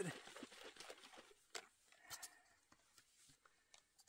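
Faint shaking of a partly filled drink bottle of hot water and instant drink powder, mixing it: a quick run of soft sloshing and knocking in the first second or so, then a few isolated soft clicks as the bottle is handled.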